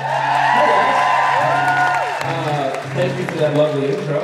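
Audience applauding and cheering, with high whoops over the clapping, fading after about two seconds as a man starts talking into a microphone.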